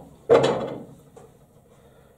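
Snooker ball dropping into a corner pocket: one loud knock about a third of a second in, fading away over about half a second. The red is potted.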